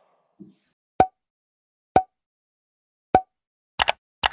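Edited-in end-screen sound effects: three short pops about a second apart, each with a brief ring, then a quick double click near the end.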